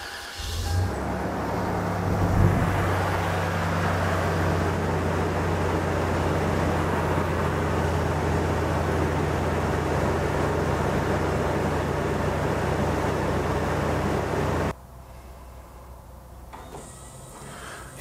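A 1998 Toyota 4Runner's 3.4-litre V6 (5VZ-FE) starts up right at the beginning and idles steadily. The owner says this engine misfires on startup and suspects a failing head gasket. The engine sound cuts off abruptly about fifteen seconds in, leaving a much quieter hum.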